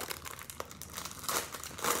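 A small packet crinkling in the hands as it is opened, with irregular crackles throughout.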